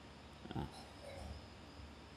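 Quiet room tone with a low steady hum, broken about half a second in by a man's short, low 'ah', with a fainter murmur just after a second.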